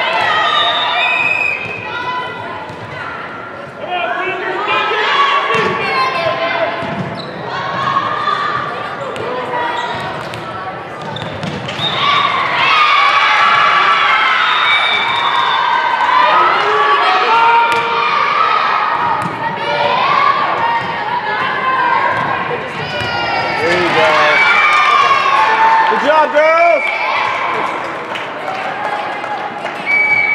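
Girls' volleyball in a gym: players' high voices calling and cheering over one another, with the ball being struck and bouncing on the hardwood court, echoing in the hall.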